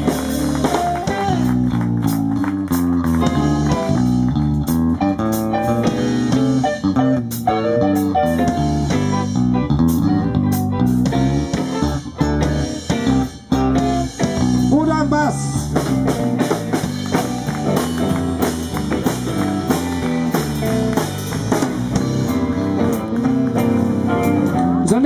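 Rock'n'roll band playing live: an electric bass guitar line stepping through low notes over drums and electric guitars, with the drums dropping out briefly about halfway through.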